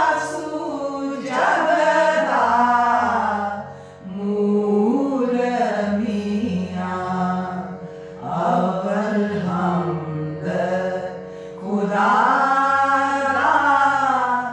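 A small group of women singing a devotional hymn in praise of God together, in sung phrases of a few seconds each, over a steady low drone.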